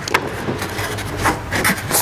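Hands sliding and rubbing over a roofing membrane sheet and rigid roofing insulation board: a steady scuffing, with a few sharper taps near the start and in the second half.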